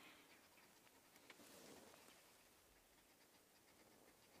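Near silence: faint outdoor bush ambience with a few faint ticks.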